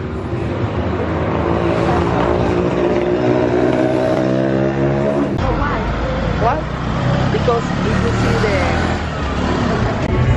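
A motor vehicle's engine running close by, its pitch rising slowly. After a sudden change about five seconds in, general street noise with voices takes over.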